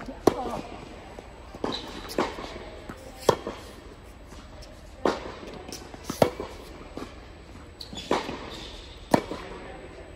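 Tennis ball struck by racquets and bouncing on an indoor hard court during a rally: sharp pops every second or so, each followed by a short echo from the hall.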